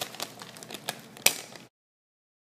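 A plastic bag of cinnamon frosted flakes crinkling as it is handled, with a few sharper crackles. The sound cuts off abruptly near the end.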